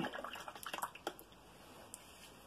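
A run of faint, light clicks and taps in the first second, with one more near the end, as a brush is picked up from among the painting things.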